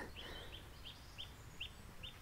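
A small bird chirping faintly: a run of short, high notes, about three a second.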